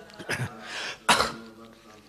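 A person coughing or clearing the throat: two harsh coughs about a second apart, the second louder, with a short breath between.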